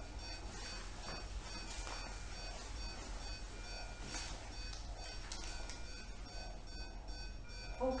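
Faint, rapid, evenly spaced electronic beeps from a bedside patient monitor, with a few soft handling clicks.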